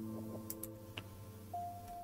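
Quiet background music: soft held synth chords that shift to a new chord about a second and a half in, with a few faint clicks.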